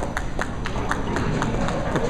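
Bowling-alley clatter: a run of sharp, irregular clacks of pins and balls, several a second, over a steady low rumble of the lanes and pinsetters.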